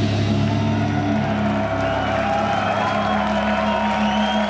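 A death metal band's distorted electric guitars and bass holding a long, ringing chord as a song ends, with whoops from the crowd over it.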